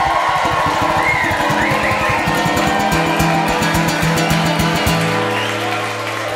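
Audience clapping steadily, with a brief cheer about a second in. Low held musical notes ring underneath from about a second and a half in.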